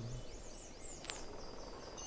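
Faint nature ambience in a music video's soundtrack: a quick run of short, high, rising chirps over a soft hiss, with one sharp click about a second in, as the last low note of the intro music dies away at the start.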